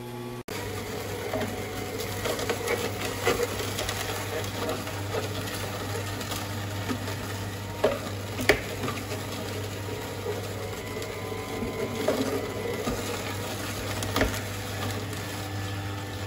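Electric slow masticating juicer running with a steady low hum while its auger crushes celery stalks, with continuous crackling and a few sharp snaps, the loudest about eight seconds in.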